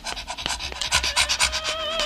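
Rapid panting, a quick run of short breaths at about seven a second that grows denser. Near the end, music with a sustained wavering tone comes in.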